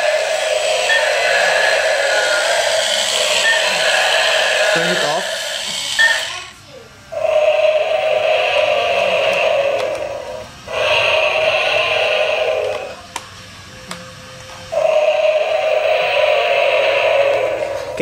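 Battery-powered toy T-rex playing its recorded roar through a small speaker, loud and repeated: one long stretch of about six seconds, then three shorter roars with brief pauses between.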